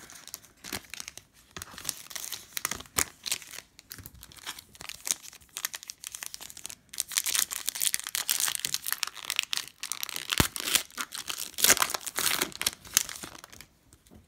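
Foil trading-card pack wrapper crinkling and tearing as it is opened by hand, a dense run of crackles that grows louder and busier in the second half.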